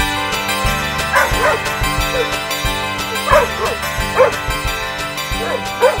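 Short, high dog yips and barks, often in pairs and irregularly spaced, starting about a second in, over steady background music.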